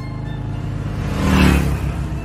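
Motorcycle engine running and swelling to a loud pass-by about a second and a half in, then fading, over background music.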